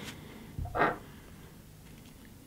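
One short breath out through the nose, a little over half a second in, over quiet room tone.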